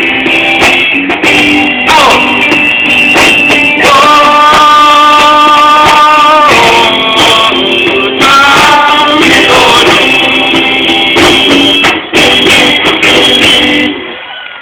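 Live rock band playing loudly, with singing over guitar and drums and a long held note about four seconds in.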